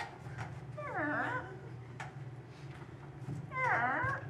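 A human voice making two squeaky, gliding creaks, each about half a second, one about a second in and one near the end: a vocal sound effect for a creaking door being opened.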